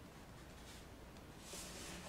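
Faint scratch of a hand and gel pen moving over glossy cardstock: a brief soft rasp about one and a half seconds in, with a couple of fainter ticks before it.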